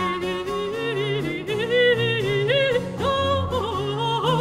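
Mezzo-soprano singing a Baroque Italian aria in long wavering notes with strong vibrato, accompanied by harpsichord and a bowed violone playing low bass notes.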